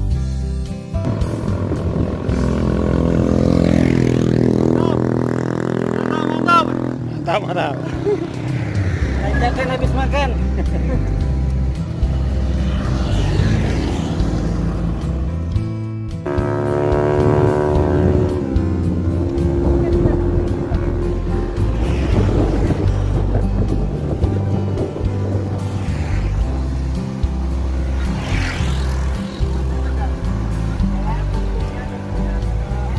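Wind rumbling on the microphone of a camera riding on a bicycle along a road. Passing motorcycles rise in pitch a few seconds in, and another falls and then holds its pitch past the middle.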